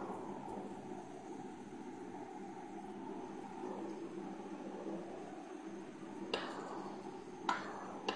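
Sliced onions sizzling steadily in hot oil as they soften, with two light clicks of the stirring spoon against the pot near the end.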